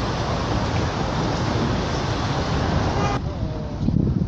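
A steady, dense rush of outdoor background noise that cuts off abruptly a little after three seconds in.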